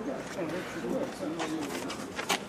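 Low murmur of people's voices with a soft, low cooing call wavering through it, and a couple of light clicks in the second half.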